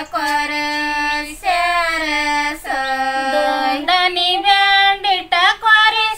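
Women singing a Kannada sobane wedding folk song without instruments, in long held notes that bend in pitch, phrase after phrase with short breaths between.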